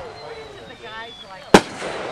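A single loud firework bang about one and a half seconds in, sharp with a brief echoing tail.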